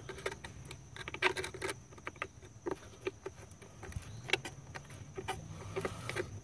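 Flat-head screwdriver working a hose clamp on the alternator's air duct: light, irregular clicks and scrapes of metal on metal.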